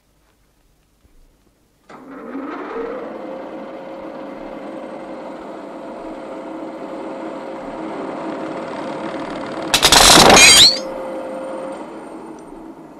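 Metal-cutting lathe starting about two seconds in, its pitch rising as it spins up, then running steadily with a whine while turning metal at raised speed. Near the end a loud, harsh crash of about a second as the cutting tool (the cutter bit) breaks; the lathe keeps running afterwards.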